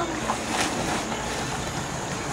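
Swimming-pool water splashing and churning as people swim and wade, heard as a steady wash of noise with a few small splashes.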